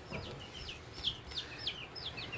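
Young chicks peeping: a run of short, high peeps that drop in pitch, about five a second.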